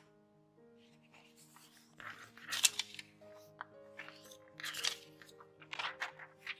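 Sheets of paper crackling and rustling as they are handled, in three crisp bursts, the loudest about two and a half seconds in, over soft background music.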